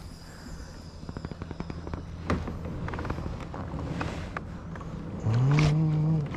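Fast run of light clicks from a spinning reel being worked on a squid-jigging rod, with a few sharper single clicks. Near the end, a short rising hum of a man's voice.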